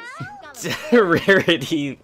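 Several overlapping cartoon character voices making wordless vocal sounds, starting about half a second in and loudest in the second half.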